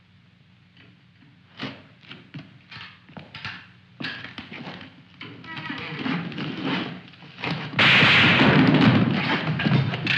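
Film soundtrack: dramatic score with sharp percussive knocks building in density, then a loud burst of gunfire near the end.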